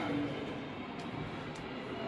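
Steady background hiss and hum of a large hall, with a man's word trailing off at the start and a couple of faint clicks about a second in.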